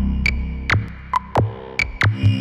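Dark, minimal electronic music: a low bass drone fades away while sharp clicks and short high-pitched blips sound irregularly, about five in two seconds.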